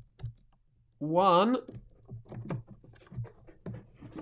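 Small combination lock's number dials clicking as they are turned to the last digit of the code, a run of light, uneven clicks.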